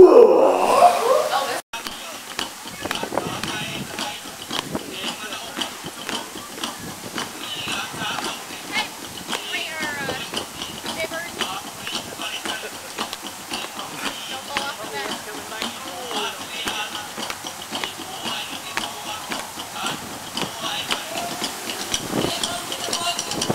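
A loud voice for the first second or so, broken off by a sudden cut; then a lower bed of indistinct voices and music with many small clicks.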